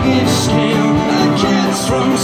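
Live country band playing: a bowed fiddle with gliding notes over strummed acoustic guitar, electric guitar, bass guitar and drums.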